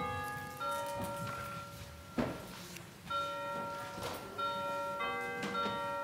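Bell-like chimes playing a slow melody, each note held about a second and overlapping the next, with a sharp knock about two seconds in.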